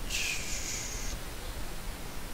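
Steady hiss from the narrator's microphone, with a soft, higher hiss lasting about a second just after the start.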